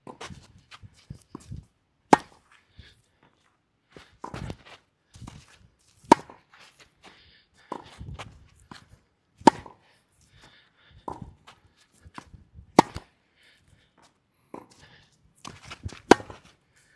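Tennis rally on a clay court. The near player's racket, strung with Kirschbaum Flash 1.25 mm string, strikes the ball with a sharp hit about every three and a half seconds, five times. Fainter hits from the far end of the court fall in between, with ball bounces and footsteps on the clay.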